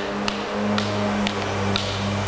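Escrima sticks clicking together a few times in a striking drill, short sharp clacks about half a second apart, over a steady low hum of background music.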